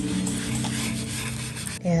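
A cloth rag rubbing wood stain into a bare wooden board, a steady scrubbing noise, over background music with held low notes.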